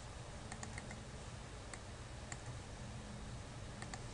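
Faint, scattered clicks from a computer mouse and keyboard, about half a dozen in four seconds, over a low steady hum.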